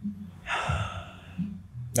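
A woman takes one audible breath, a short breathy rush lasting about half a second, beginning about half a second in.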